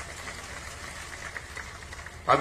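Faint steady low hum with light hiss from a public-address microphone, in the pause before a speaker begins.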